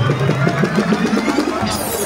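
Live hip-hop concert sound through a phone: a heavy backing track with voices over it. The bass drops out about halfway, and a falling swept effect comes in near the end.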